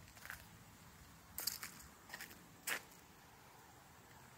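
Faint footsteps on a walkway: a few short, irregular scuffs and crunches, the clearest about a second and a half in and again near the three-second mark.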